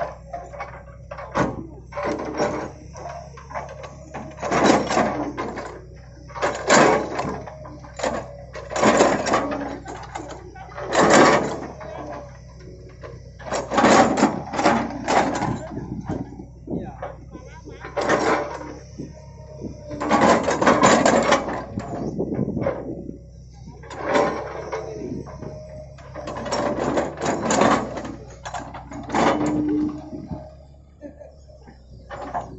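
Hitachi 110 MF excavator's diesel engine running with a steady low hum while the machine works, with a person talking in short bursts over it.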